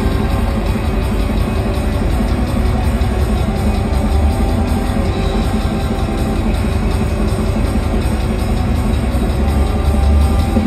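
Live rock band playing loudly: drum kit and electric guitar over a heavy low end.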